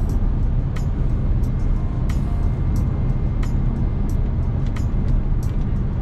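Steady low rumble of road and engine noise inside the cabin of an Audi A5 quattro driving through a bend at speed.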